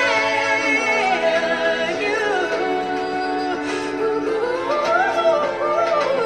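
Live vocal performance: a female lead voice and backing singers in harmony, holding long notes that slide down about two seconds in and swell upward near the end.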